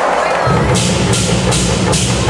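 A school drum troupe's red Chinese barrel drums start up about half a second in with dense, steady low drumming, joined just under a second in by hand cymbals clashing about two and a half times a second.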